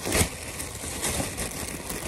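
Thin plastic shopping bag rustling and crinkling as it is handled, with a louder crackle just after the start.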